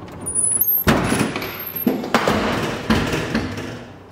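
A house's front door being pushed open: a sharp clunk about a second in, a second knock about two seconds in, then a stretch of scraping, rustling noise as it swings and the person walks in.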